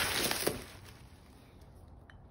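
Bubble wrap and plastic packaging crinkling as a hand pulls a wheel spacer out of its cardboard box, with a sharp click about half a second in; the rustling dies away within the first second.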